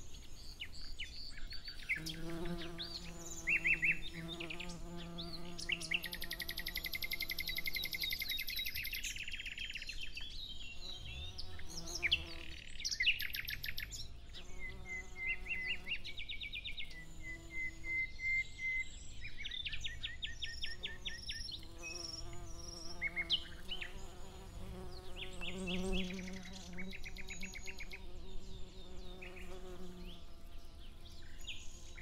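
Songbirds singing, with rapid trills and repeated chirps, over the on-and-off hum of flying insects buzzing close by.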